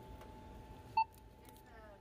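A self-checkout kiosk gives one short electronic beep about a second in, over a faint steady hum.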